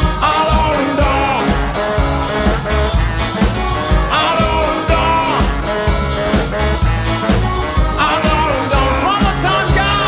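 Live band music with a steady beat: drums and upright bass under a lead voice singing in phrases.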